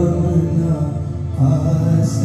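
A man singing a slow Urdu nazm into a microphone, holding long, drawn-out notes; one phrase ends and a new note begins about one and a half seconds in.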